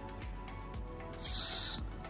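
Soft background music with steady held notes, and about a second in a short papery hiss as one glossy trading card is slid off the stack.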